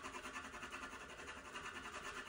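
Faint scratching of a watercolor pencil rubbed back and forth on watercolor paper, in quick, even strokes.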